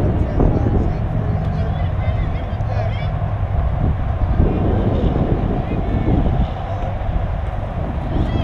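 Wind rumbling on the camera microphone, with faint distant voices of players and spectators over it.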